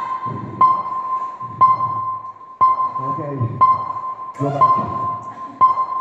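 A high electronic beep that repeats about once a second, the regular pulse of a workout interval track. Voices and background music run underneath.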